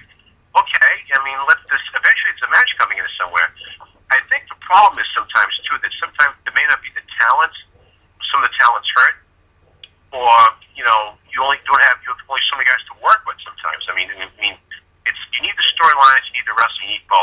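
A man talking over a telephone line, the voice thin and narrow-band, with a couple of short pauses.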